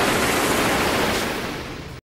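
Dense hissing crackle of a shower of sparks bursting over a fallen Cyberman, fading out over the last second.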